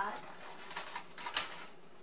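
A plastic bag of shredded cheese crinkling faintly in a few short rustles as cheese is tipped out of it into a measuring cup.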